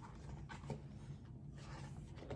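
Faint paper rustling as a page of a hardcover picture book is turned.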